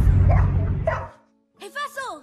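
A puppy whimpering, with a short whine that slides down in pitch near the end. Before it, a loud low rumble stops abruptly about a second in.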